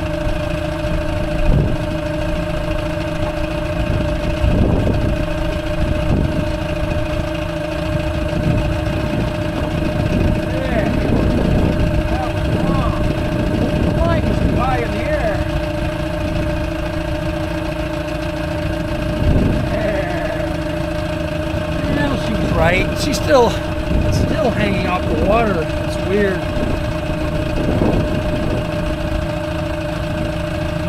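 Small outboard motor running at slow trolling speed, a steady hum that holds one pitch throughout.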